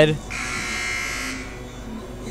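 Gym scoreboard horn giving one steady buzz of about a second, sounding at the end of a timeout.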